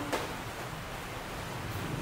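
Steady, even background hiss with no distinct source, and a faint click just after the start.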